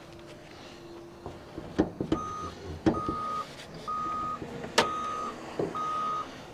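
Clunks and knocks of a car's hood latch being worked and the hood lifted open, with a vehicle's reversing alarm beeping steadily about once a second from about two seconds in, five beeps in all.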